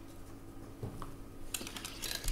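Quiet room tone with a couple of small clicks, then a quick run of faint clicks and rustling near the end.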